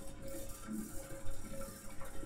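Quiet room noise: a faint steady hum and hiss, with no distinct sound event.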